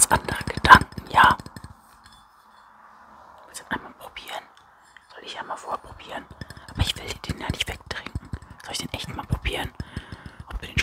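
Close-up whispering into a microphone, with sharp little clicks through it, quiet for a moment about two seconds in before the whispering resumes.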